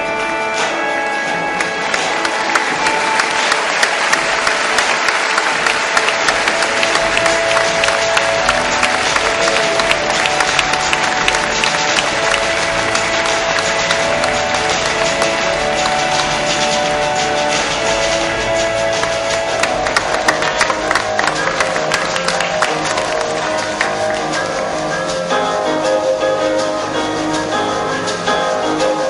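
Crowd applauding over background music. The clapping swells about two seconds in and dies away a few seconds before the end, while the music carries on.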